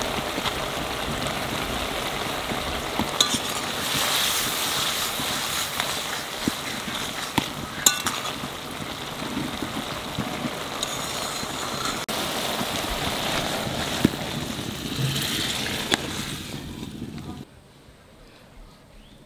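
Elephant foot yam stalks sizzling as they stir-fry in a wok, with occasional clicks and scrapes of the spatula against the pan. The sizzling cuts off suddenly near the end.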